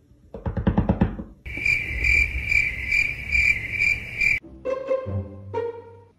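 A steady high-pitched chirping trill that pulses a little over twice a second for about three seconds. Near the end comes a short sound whose pitch falls in steps.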